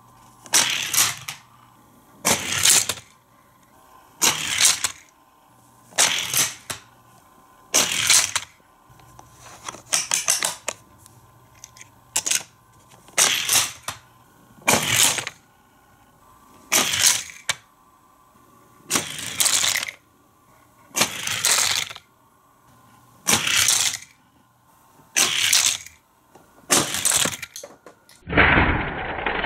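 Sharp plastic clacks from a Hot Wheels track launcher being worked by hand, about fifteen times, roughly every two seconds, some coming as quick double clacks.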